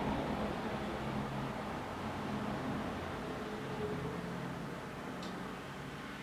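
Steady background hiss with a faint low hum, like a fan running in a small room: room tone.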